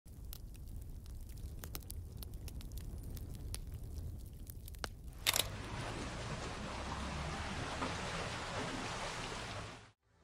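A fire crackling over a low rumble for about five seconds. Then, after a sharp hit, water rushes and splashes steadily off a turning wooden water wheel, cutting off just before the end.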